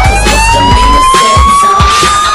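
Siren sound effect laid over a hip hop DJ mix: one tone sliding slowly upward in pitch over a steady bass line and drum hits.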